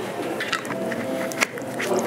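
A few light clicks and taps of glassware being handled after a pour, the sharpest about halfway through, over a steady faint background.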